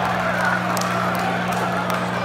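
Concert crowd noise with scattered calls, over a steady low drone held from the band's stage amplifiers.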